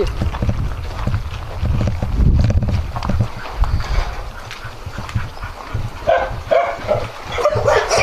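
Several dogs in kennel pens barking at people walking past, starting about six seconds in and getting louder toward the end. Before that there is a low rumbling noise.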